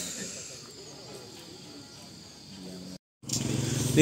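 Faint distant voices over steady outdoor background noise. The sound drops out completely for a moment about three seconds in, then a louder, steady background noise comes back in.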